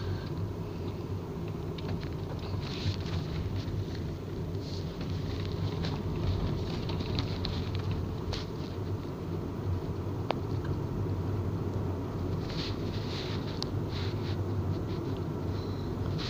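Steady low rumble and hum of a moving vehicle heard from inside the cabin, with a few faint clicks and rattles scattered through it.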